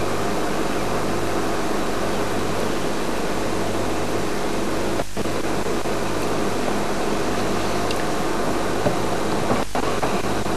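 Safari vehicle's engine idling: a steady low hum under a hiss. The sound drops out for an instant about halfway through and again near the end.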